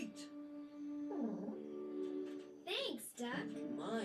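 A voice holding a long steady note for about a second, then swooping up and down in pitch several times, with music.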